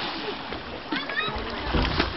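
Water splashing and churning where a swimmer has just jumped in off a boat.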